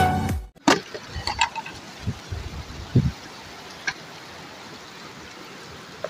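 Background music fading out at the very start, then the steady rush of a fast mountain river, with a few scattered small knocks and clicks.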